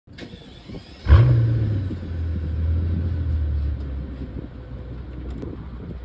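Mercedes-Benz S65 AMG's twin-turbo 6.0-litre V12 starting from behind its exhaust: it fires about a second in with a brief rev flare, then settles into a steady, lower idle.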